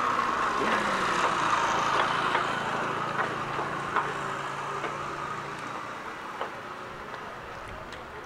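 A motor vehicle running, a steady engine-and-road noise that fades slowly away over several seconds, with a few faint clicks.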